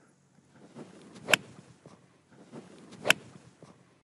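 A golf iron strikes the ball with a sharp, solid click; a second, similar click comes about two seconds later.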